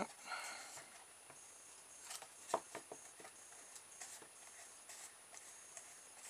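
Faint handling sounds of a cardboard model car: scattered light clicks and taps of fingers on the cardboard chassis and wheels, with a brief soft rustle near the start and the sharpest tap about halfway through.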